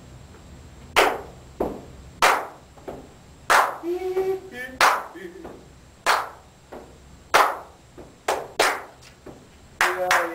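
A person clapping hands, about a dozen sharp claps at an uneven pace, each ringing briefly in a small studio room. A voice hums briefly in the middle.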